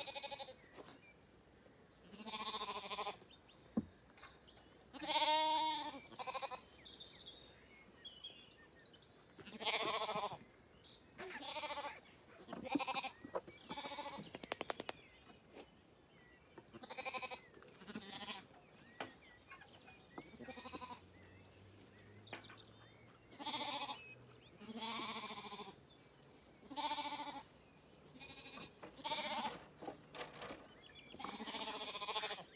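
Zwartbles lambs bleating again and again, a call every second or two, some of them wavering.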